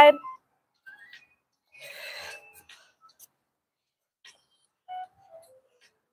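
Mostly quiet, with a woman's short breathy exhale about two seconds in and a faint short vocal sound near five seconds, the breathing of exertion during plank-to-ankle-tap movements.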